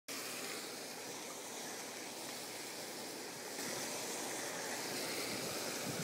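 Hot tub jets churning the water: a steady rushing, bubbling hiss that gets slightly louder a little past halfway.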